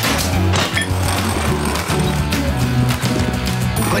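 Cartoon sound effect of a truck-mounted winch paying out its tow cable, a rapid mechanical clatter of clicks, over background music.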